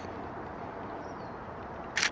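Steady outdoor background noise, then near the end two sharp clicks a fraction of a second apart: the shutter of a Nikon Z6 mirrorless camera firing on a macro shot.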